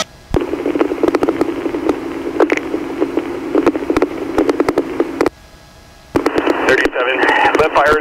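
Police radio transmission: a keyed channel with crackling hiss and clicks. It cuts out for under a second, then another transmission opens, and a voice starts near the end.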